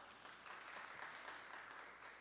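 Faint, brief audience applause that dies away near the end.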